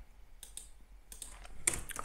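Computer keyboard being typed on: a few quiet, scattered key clicks as a layer name is entered, with a sharper click near the end.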